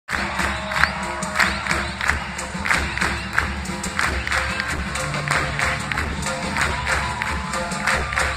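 A large band playing live, with a steady beat about every two-thirds of a second, over crowd noise, recorded from within the audience.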